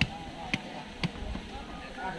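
Meat and bone being chopped with a blade against the ground, three dull chops about half a second apart, over background crowd chatter.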